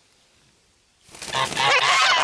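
Domestic geese honking: after about a second of near quiet, a loud, harsh goose call with a wavering pitch starts and carries on.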